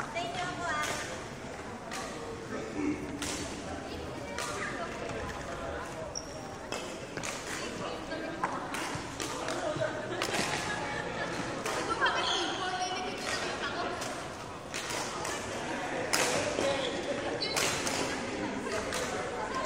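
Indistinct voices talking in a large sports hall, with sharp knocks or hits every few seconds.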